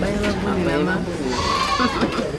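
People's voices talking, with no clear words.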